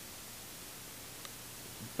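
A steady, faint hiss of background noise in a pause between speech, with one small tick a little past the middle.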